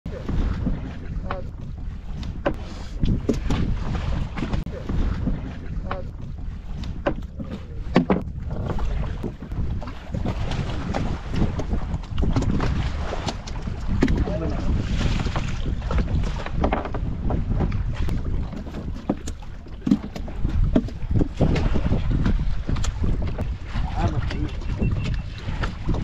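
Wind buffeting the microphone over a steady rush of sea water around a small open fishing boat, with scattered short knocks and splashes.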